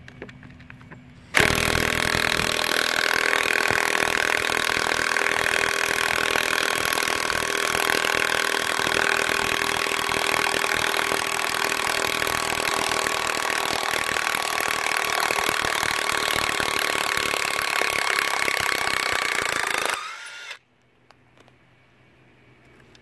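Porter-Cable 20V half-inch cordless impact wrench hammering steadily as it backs a long lag screw out of a wooden post, running for about eighteen seconds. Its pitch rises slightly as the screw frees, just before it stops suddenly.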